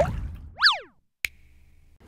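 Cartoon-style sound effect: a quick whistle-like glide that shoots up in pitch and slides back down, boing-like, followed a moment later by a single sharp click. It opens as a rush of noise fades out.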